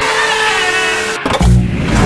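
A drawn-out shout under a glitchy, distorted editing effect that cuts off suddenly just over a second in, followed by a deep bass boom as outro music begins.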